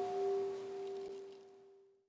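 Buddhist bowl bell ringing out after a single strike, one steady tone with fainter higher overtones that waver slightly in loudness. It fades away to silence near the end.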